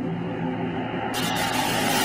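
Analogue TV static hiss, muffled at first and then opening out into full, bright static about a second in.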